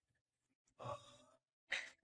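Near silence, with one faint, short sigh-like exhale about a second in and a brief breath just before speech resumes.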